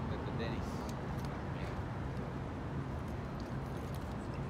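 Steady low rumble of city street traffic, with faint talking.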